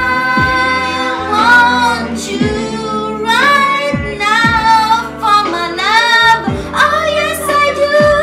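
A woman singing long, wavering R&B notes and runs over a backing track with a steady bass-drum beat.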